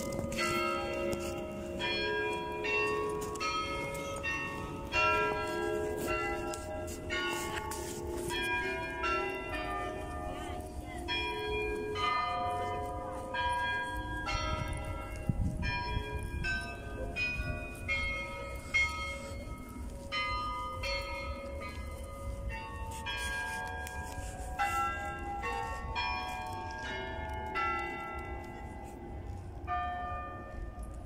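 Carillon bells of the Peter and Paul Cathedral bell tower playing a melody: a continuous run of struck bell notes at many pitches, several a second, each ringing on and overlapping the next.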